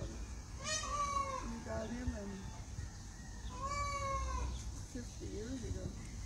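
Peacock calling twice, two drawn-out cries about three seconds apart, each rising slightly then falling, with fainter low calls between them.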